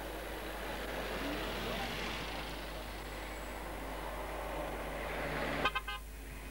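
Road traffic passing close, then a vehicle horn sounded in a rapid series of short toots near the end.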